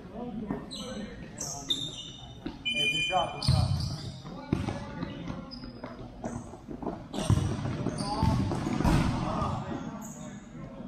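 Futsal being played in a large echoing hall: the ball thuds off feet and the court, sneakers squeak on the sport-tile floor, and players shout without clear words.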